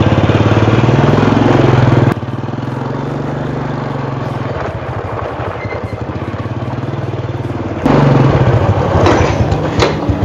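Honda Supra motorcycle's small single-cylinder four-stroke engine running as it is ridden slowly, its pitch rising over the first two seconds. The sound drops abruptly at about two seconds, runs steadily and quieter, then comes back louder near the end.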